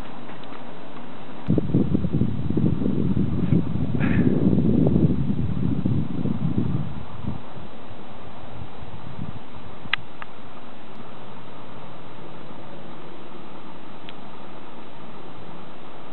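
Wind buffeting the camcorder's microphone: an uneven low rumbling that sets in about a second and a half in and dies away after several seconds, over a steady hiss. A single short click comes near the ten-second mark.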